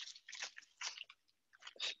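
A person sipping hot tea: a series of faint, short slurping sips.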